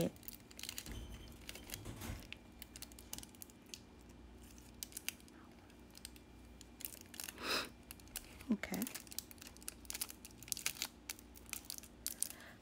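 Faint crinkling and scattered small clicks of nail transfer foil and gloved fingers rubbing and pressing the foil onto a plastic nail tip. A short hum or breath sounds about eight seconds in.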